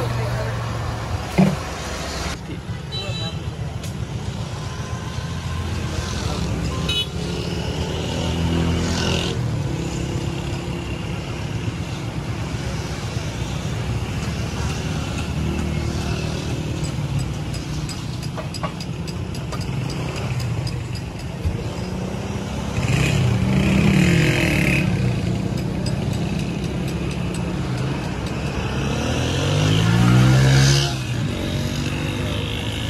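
Road traffic: motor vehicles running and passing, a steady low rumble, with voices now and then.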